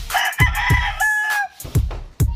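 A rooster crowing once, a call of about a second and a half that ends on a held note, over background music with a steady bass-drum beat.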